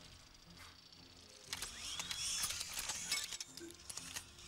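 Mechanical sound effects of robotic tentacle arms. They are quiet at first; from about halfway comes a run of sharp clicks and clanks, with a short whirring whine that glides up and down.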